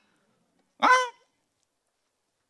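Speech only: a man's single short spoken interjection, 'hein', with falling pitch, about a second in; otherwise silence.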